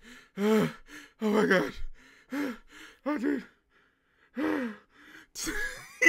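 A man laughing hard in repeated gasping bursts, roughly one a second.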